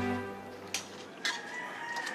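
A rooster crowing: one long, drawn-out call starting a little past halfway. A held music chord fades out at the very start, and there is a single click about a third of the way in.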